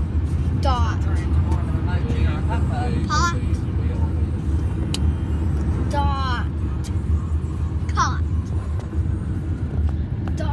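Steady low road rumble inside a moving car's cabin, with a child's high-pitched voice making several short sliding calls, about four, spread through it.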